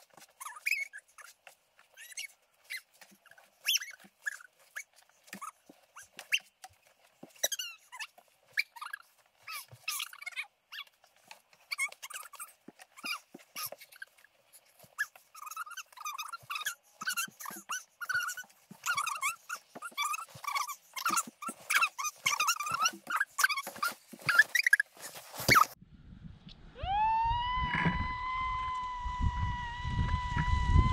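Footsteps crunching through deep snow, mixed with whimpering, groaning vocal sounds. A few seconds before the end the sound cuts to a steady whistle-like tone over a low wind rumble.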